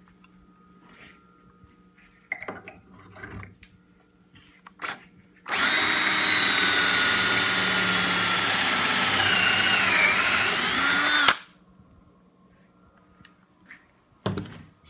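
Handheld power drill driving a stepped pocket-hole bit through a Kreg jig into a wooden board, running steadily for about six seconds. Its pitch dips briefly near the end, and then it cuts off suddenly. A few light knocks of handling come before it.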